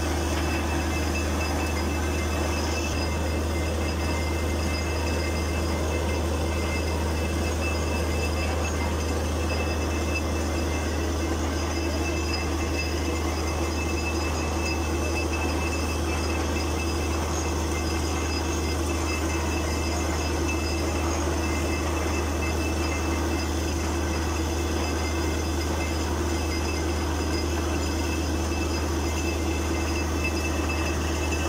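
Borewell drilling rig running at a steady, unbroken drone while drilling, with water spraying out around the drill pipe at the bore head: the bore has struck water.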